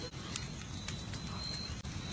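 Quiet outdoor background with a few faint, scattered clicks and a thin, steady high-pitched whine.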